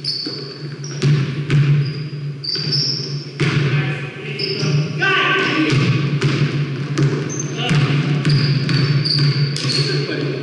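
Basketball bouncing and sneakers squeaking in many short, high chirps on a hardwood gym floor during a running game, with players' indistinct voices, all echoing in a large gym over a steady low hum.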